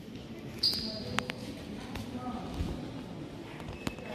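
Quiet ambience of a large indoor hall: faint, indistinct murmur of distant voices, with a few sharp clicks, the loudest near the end.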